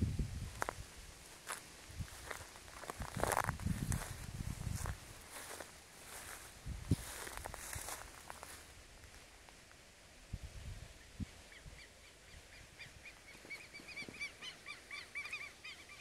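Outdoor field ambience: wind buffeting the microphone, with rustling, during the first half. In the second half a bird calls in a rapid series of short, repeated chirps that grow louder toward the end.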